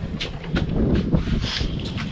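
Wheeled lawn spray cart being pushed over brick pavers: an irregular low rumble with scattered clicks and rattles, mixed with footsteps and wind on the microphone.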